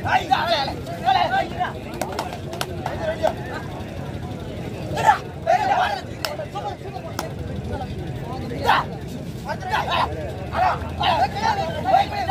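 Short, irregular bursts of men shouting and calling from kabaddi players and spectators, with a few sharp knocks, over a steady low hum.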